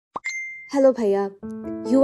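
Phone message notification: a quick rising pop followed by a short, steady high ding. A voice then starts reading the message, with background music coming in.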